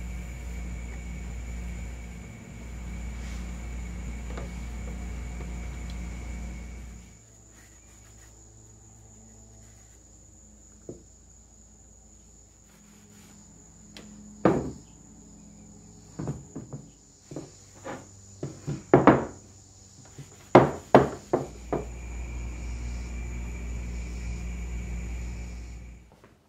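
A steady mechanical hum with a low drone and a faint high whine, which drops away about a quarter of the way in and comes back near the end. In between, a series of sharp wooden knocks and clacks, loudest in a quick cluster in the second half, as oak parts are handled and set down on a workbench.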